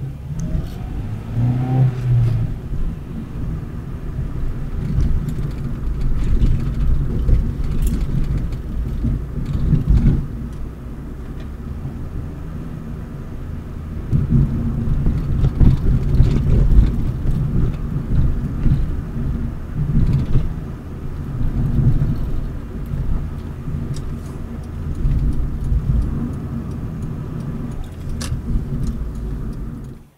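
Acura RSX driving, heard from inside the cabin: a steady low rumble of engine and road noise that swells and eases with speed, with a quieter stretch partway through.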